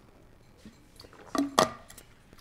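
A drinking cup set down on a desk: a couple of short knocks and a clink about one and a half seconds in.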